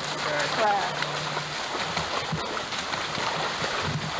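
Voices of several people talking and calling out, loudest in the first second, over a steady rush of flowing creek water.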